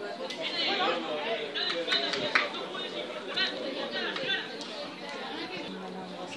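Indistinct chatter of several voices talking at once, with a few louder calls rising above it in the first seconds and a single sharp knock a little after two seconds in.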